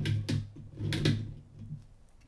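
LEGO Technic transmission's ratchet mechanism clicking as its shaft is turned in reverse by hand: a few irregular plastic clicks, fading out after about a second and a half. The slipping ratchet means no power passes through the transmission in reverse.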